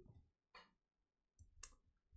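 Near silence with a few faint, short clicks: one about half a second in and two close together near the end.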